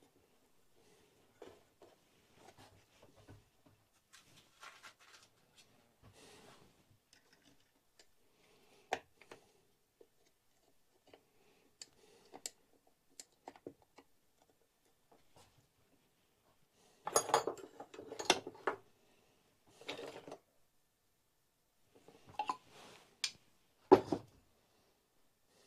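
Hands handling and fitting small parts on a Stihl 036 chainsaw during an oil pump install: scattered light clicks and scrapes of metal and plastic, with a louder burst of rattling and scraping about two-thirds through and a sharp click at the end.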